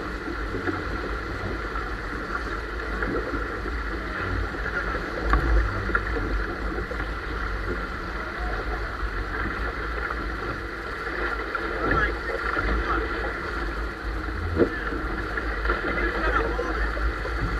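Wind buffeting the microphone with a continuous low rumble, over water rushing and splashing along the hull of a sailboat heeled under sail, with a few brief sharper splashes or knocks.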